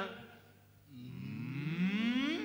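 Men's voices in a long drawn-out "ooh" that rises in pitch, starting about a second in.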